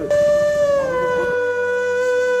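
Background music: a flute holding a long note that starts abruptly and steps down slightly in pitch less than a second in, then stays steady.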